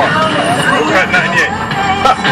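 Voices talking inside a moving car, with the car radio playing.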